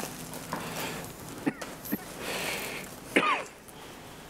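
Room tone of a working cath lab: a steady hiss with a few brief, faint sounds, among them a short falling tone about three seconds in.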